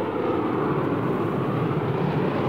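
Eurofighter Typhoon fighter jet's twin EJ200 turbofans, heard from the ground as a steady, even jet noise while the aircraft flies a tight turn.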